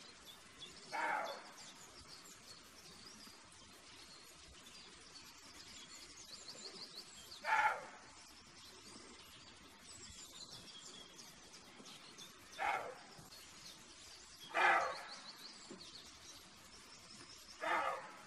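Roe deer buck barking: five short barks spaced a few seconds apart, over a background of birds chirping.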